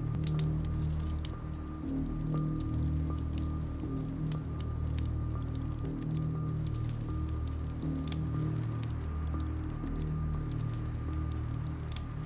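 Slow film score of low, sustained notes that shift every second or two. Under it is a faint, scattered crackle of a wood campfire.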